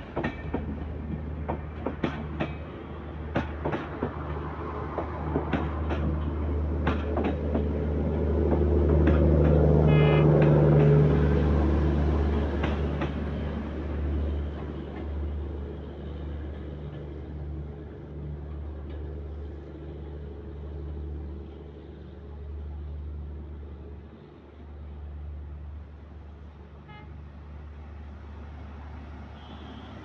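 Silk City Express passenger coaches rolling past on the rails. Sharp wheel clicks over the rail joints come through the first several seconds over a steady rumble. The rumble grows to its loudest about ten seconds in, then fades as the last coach draws away.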